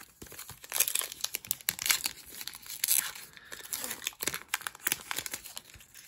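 Foil wrapper of an Upper Deck Trilogy hockey card pack crinkling and tearing as it is ripped open by hand, a dense run of sharp crackles, loudest in the first half.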